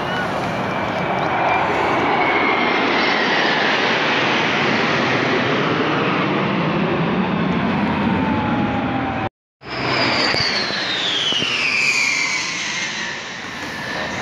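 F-16 fighter jets flying over in formation: a loud, steady jet roar carrying a whine that slowly falls in pitch as they pass. After a brief break about nine seconds in, another jet aircraft passes with a whine sliding down in pitch.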